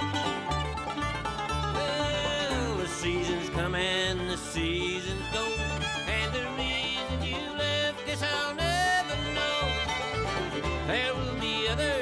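Bluegrass band playing an instrumental intro: fiddle, mandolin, banjo and acoustic guitar over an upright bass keeping a steady beat, with the melody line sliding between notes.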